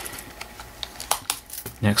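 A scatter of light, irregular clicks and taps as a riveted leather knife sheath is handled and turned in the hands.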